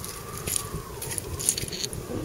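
Faint, scattered light clinks of coins and bottle caps shifting against one another in a gloved palm as a finger sorts through them, over a low rumble of wind.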